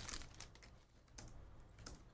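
Faint scattered light clicks and a soft rustle of a foil trading-card pack being pulled open and its cards handled.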